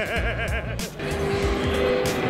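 A man laughs for about a second, then background music with steady held notes plays over the noise of a crowded hall.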